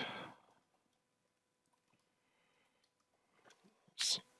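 Near silence: room tone, with the fading end of a spoken word at the start and a few faint clicks near the end.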